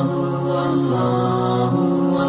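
Advertising jingle music: a held, voice-like chord of several sustained tones that steps to a new pitch about a second in and again near the end.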